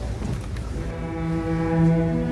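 A school string orchestra starting a piece. After a low rumble, the low strings come in about a second in with a held bowed note, and a higher sustained note joins them.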